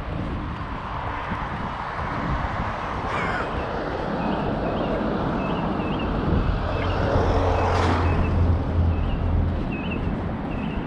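Road traffic going by on a busy road. In the second half a heavy vehicle passes close by with a low rumble that peaks about three quarters of the way through. A small bird chirps repeatedly in the background.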